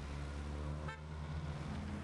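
Road traffic: a steady engine rumble with one short car horn toot about a second in.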